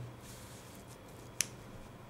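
Quiet room tone with a faint steady low hum, broken by one short, sharp click about two-thirds of the way through.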